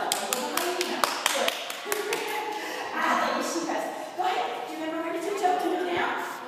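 Indistinct voices talking, with a quick, irregular run of sharp taps in the first two seconds.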